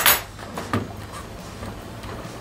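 The two metal latches of a plastic tool case flicked open: a sharp click at the start and a second, softer click a little under a second later.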